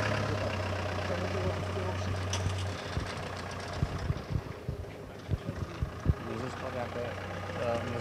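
A crane tow truck's engine runs steadily with a low hum while the truck hoists a car on chains. The hum cuts off about three seconds in, and a few scattered low knocks follow.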